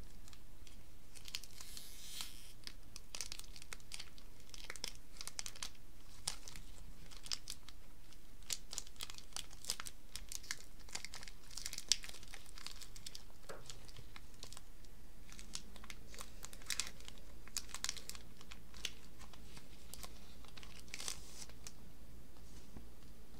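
Foil wrapper of a Magic: The Gathering booster pack being torn open and crinkled by hand. It starts about a second in with a tearing rustle, then goes on as a long run of sharp crinkles and crackles.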